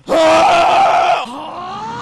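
A man's loud, sudden scream lasting about a second.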